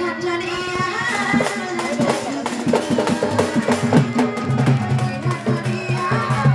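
Live folk drumming: a large two-headed barrel drum slung from the shoulder and a drum on a stand beat a dense, fast rhythm, with a singing voice over it.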